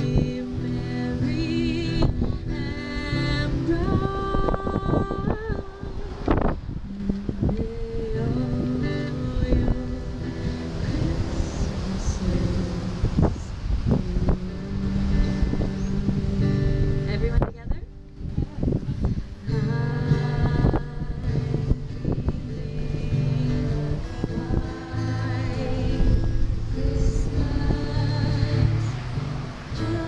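A woman singing a slow song into a microphone, accompanying herself on a strummed acoustic guitar, with a brief break in the singing a little past halfway.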